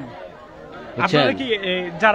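Speech only: a man talking into a microphone with a crowd's chatter behind, after a brief pause in his words at the start.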